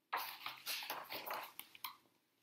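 Paper rustling as the pages of a picture book are turned, a run of short swishes with a few small clicks.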